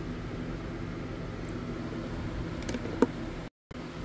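Steady low mechanical hum of room background noise, with one sharp click about three seconds in and a brief drop to silence just after.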